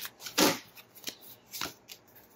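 A deck of tarot cards shuffled by hand: a few short papery snaps, the loudest about half a second in.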